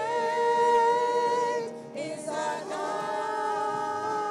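A church worship team singing a slow contemporary worship song in long held notes. A phrase is sustained until just before two seconds in, and a second phrase begins soon after.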